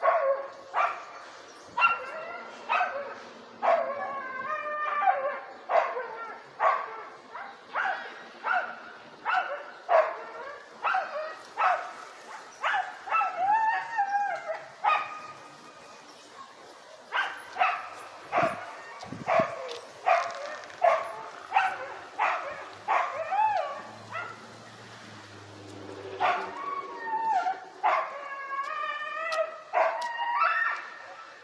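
A dog barking over and over, roughly one to two barks a second, with a couple of short pauses.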